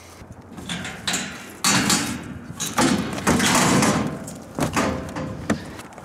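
Scraping, knocking and clattering of junk and a wooden speaker cabinet being shifted and dragged about. The loudest part is a rough stretch from under two seconds in to about four and a half seconds, with sharp knocks around it.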